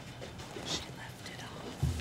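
Quiet meeting-room noise with faint, low voices murmuring or whispering, and a short low thump just before the end.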